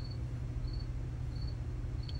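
Faint insect chirping: a short high chirp about every two-thirds of a second, over a steady low hum.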